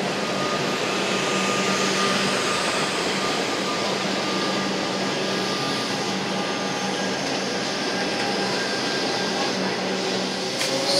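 Comeng electric train running past the platform as it departs, a steady rush of wheels on rail with a faint steady whine over it.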